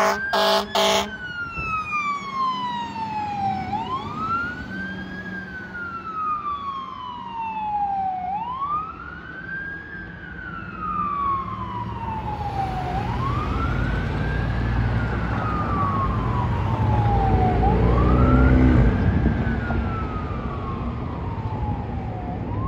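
Fire engine siren wailing, each cycle a quick rise and a slower fall, repeating about every four and a half seconds, after short blasts of the truck's horn in the first second. The siren fades as the engine pulls away, and a low traffic rumble grows in the second half.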